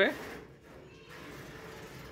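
A man's voice ends a word at the very start, then quiet room tone.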